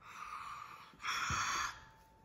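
A child's mouth sound effects: a soft hiss of breath, then a louder, sharper burst of breathy hissing with a short low thud about a second in, acting out a puff of gas and then an explosion.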